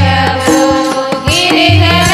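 Marathi devotional bhajan accompaniment: mridang drum strokes over held low tones, with a singing voice coming in during the second half.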